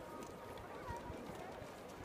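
Faint, distant voices carrying across an open ski slope over a steady background hiss, with a low thump about a second in.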